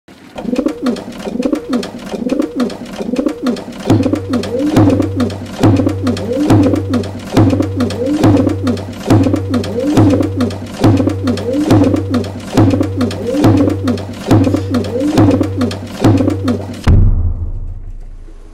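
Pigeons cooing in a repeating pattern, joined about four seconds in by a steady low beat; it all stops suddenly about a second before the end.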